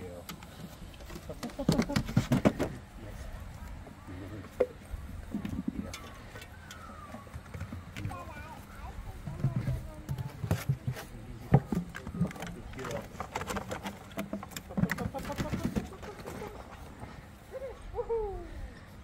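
Scattered knocks and clatters, a cluster about two seconds in and more in the second half, as a Labrador puppy's paws strike wooden agility obstacles, with a handler's voice giving short praise ("good").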